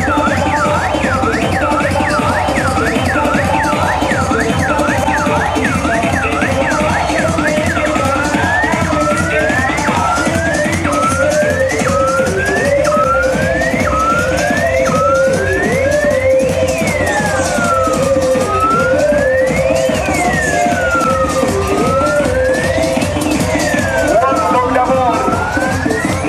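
Loud carnival parade music with a steady beat, with a siren sound over it: a fast yelp at first, slowing into rising sweeps about a third of the way in and then into long, slow rising and falling wails.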